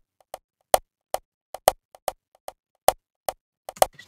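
Sampled conga hits playing in a syncopated amapiano percussion loop, with no kick or bass under them. Each hit is followed by quieter delayed repeats from an FL Studio Fruity Delay 2 plugin, which gives the pattern its bounce.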